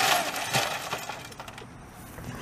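Old television smashing into a metal fire pit full of scrap: a crash of breaking glass and clattering debris that dies away over about a second, with one more knock about half a second in.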